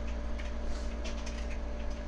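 Steady low electrical hum with a thin higher whine over it, and a few faint ticks.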